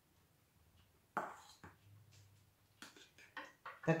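Metal spoons scraping and tapping on a china plate and a stainless steel pot while mashed potatoes are served: a soft scrape about a second in, then a few light clicks near the end.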